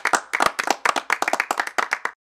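A few people clapping their hands: a quick, uneven run of claps at about ten a second.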